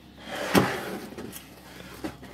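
Wooden companionway step that covers a yacht's engine being handled and shifted by hand: rubbing and scraping, with a single sharp knock about half a second in.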